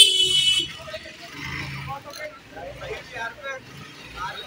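A high-pitched vehicle horn honking, cutting off about half a second in, followed by street traffic noise and scattered voices.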